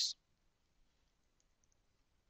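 Near silence with three faint, quick computer keyboard key taps about one and a half seconds in, as a short word is typed.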